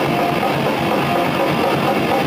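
Death metal band playing live, distorted electric guitars riffing in a dense, steady wall of sound.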